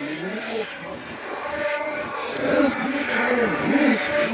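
A man talking forcefully at close range, over steady background noise.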